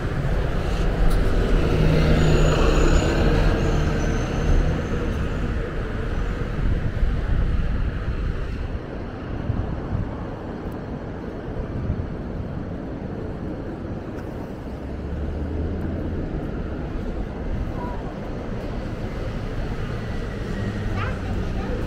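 Road traffic on a city street, louder in the first several seconds as a vehicle passes, then a steadier, quieter traffic hum.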